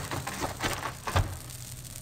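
Radio-drama sound effect of a pitched baseball landing in a catcher's mitt: a few short soft knocks, the strongest about a second in, over the steady low hum of the old broadcast recording.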